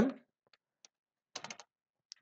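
Computer keyboard keystrokes: a couple of faint single taps, then a quick run of several key clicks about a second and a half in.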